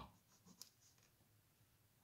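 Near silence with a few faint ticks and scratches of a pen on paper against a plastic ruler during the first second.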